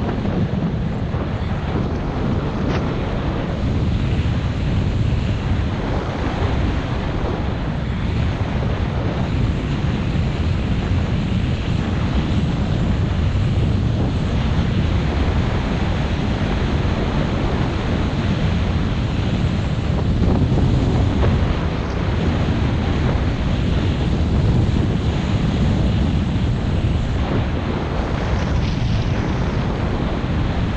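Wind buffeting the camera's microphone during a steady ski descent, a continuous low rush, with the skis hissing and scraping over groomed and chopped-up snow.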